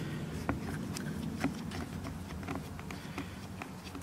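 Flathead screwdriver turning a small machine screw through a plastic latch piece into a nut, making scattered faint clicks and scrapes. A low steady hum runs underneath.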